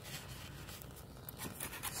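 A thin stream of gasoline-diluted engine oil trickling faintly into a pool of oil in a drain pan, with a few light clicks near the end. The oil is thin because fuel has got into it, probably through broken piston rings.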